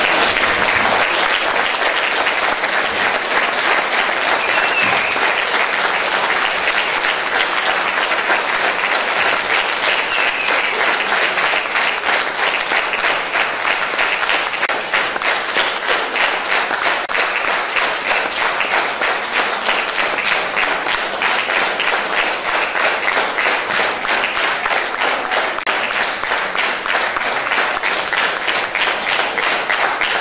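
Audience applauding a curtain call: a large hall full of people clapping, steady and sustained.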